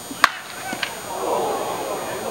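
A single sharp pop as a pitched baseball hits the catcher's mitt, followed by two lighter clicks. Voices chatter from about a second in.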